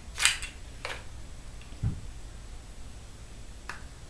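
Handling noises from a small makeup product and its packaging: a short scraping rustle just after the start, a softer one about a second in, a low thump near two seconds, and a sharp click near the end.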